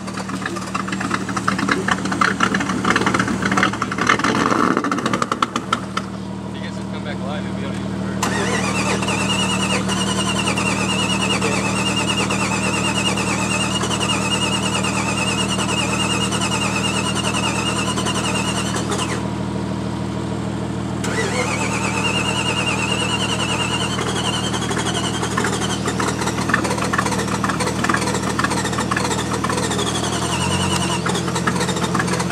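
Jeep engine running steadily during a tow-strap recovery in mud. A wavering high-pitched whine sits over it from about eight seconds in, breaks off briefly a little past halfway, then returns for a few seconds.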